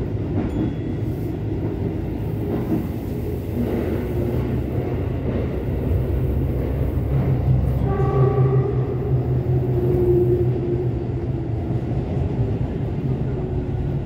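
Sendai Subway Namboku Line train running between stations, heard from inside the car: a steady low rumble with a faint whining tone for a couple of seconds midway.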